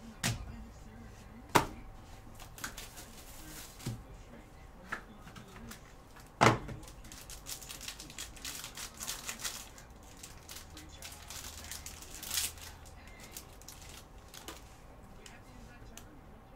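Foil and plastic pack wrapper crinkling in stretches as gloved hands open a trading-card pack and handle the cards. It is broken by a few sharp knocks of hard plastic card holders on the table, the loudest about a second and a half in and about six and a half seconds in.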